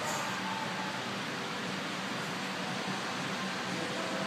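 Steady room noise with a faint low hum, even throughout, like ventilation running in a large gym room.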